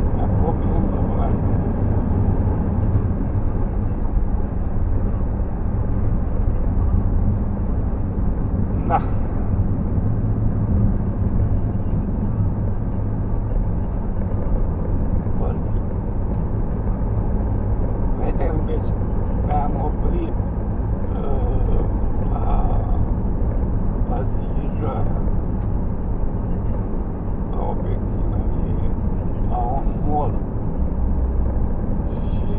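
Steady low engine and road rumble inside the cabin of a moving vehicle.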